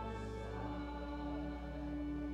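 Church organ holding sustained chords, with a choir singing a hymn along with it; the chord changes about two-thirds of a second in.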